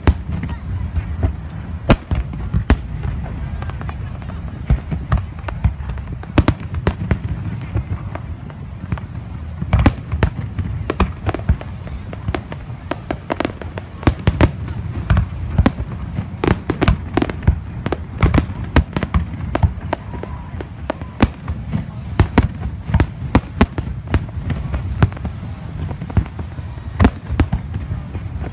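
Aerial firework shells bursting in a display: sharp bangs every second or so, coming thicker and faster in the second half, over a continuous low rumble.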